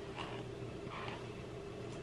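A faint steady low hum, with a few soft rustles.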